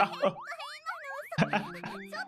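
Cartoon comedy sound effect: a rapid run of rising, boing-like swoops for just over a second, followed by a voice.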